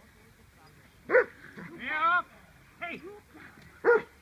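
A dog barking twice: two short, sharp barks, one about a second in and one near the end.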